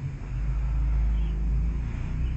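A low, steady rumble that swells a little in the middle, with no clear source.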